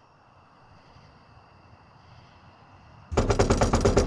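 Rapid knocking of knuckles on a wooden front door: a fast, loud run of raps, about ten a second, starting about three seconds in after quiet room tone.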